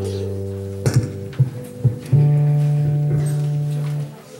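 Live instrumental music: low held chords, with a few short notes struck about a second in, then a louder chord held from about halfway that cuts off at the end. The band is playing ahead of a song.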